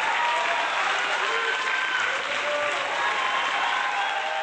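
Audience applauding steadily, a dense continuous clapping.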